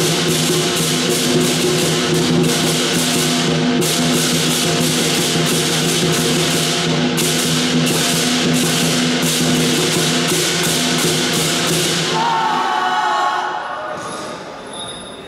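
Southern lion dance percussion: a lion drum, clashing cymbals and a ringing gong play a loud, driving rhythm. About twelve seconds in the playing stops and the ringing fades away.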